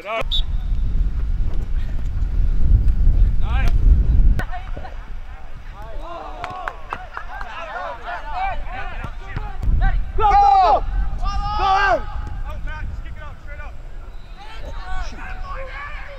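Shouts and calls from players and the sideline carrying across a soccer pitch, with a low rumble of wind on the microphone for the first four seconds or so.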